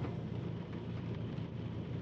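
Steady low rumble inside a car's cabin as the car creeps along at one or two miles an hour, its engine running near idle.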